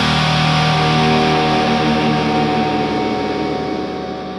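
Rock music ending on a distorted electric guitar chord that is held and slowly fades out.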